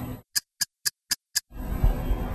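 Five short, sharp ticks, evenly spaced at about four a second, over dead silence: a ticking sound effect edited in as a transition.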